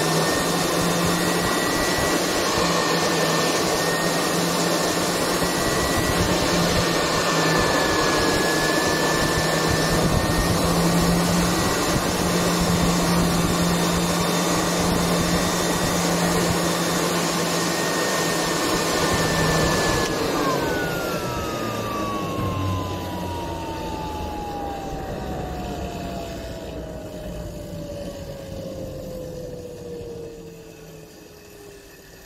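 Homemade jet engine on a test run: loud rushing air with a high, steady turbine whine and a low hum. About two-thirds through, the hum and much of the rush stop, and the whine falls steadily in pitch as the rotor spins down.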